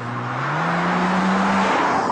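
BMW Z4 sDrive35i's 3-litre twin-turbo straight-six accelerating: its note climbs in pitch over the first second, then holds steady while the sound grows louder.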